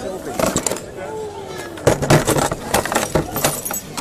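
Keys and other pocket contents clinking and knocking as they are handled during a security bag-and-pocket check, in a series of sharp clicks in several clusters, with voices in the background.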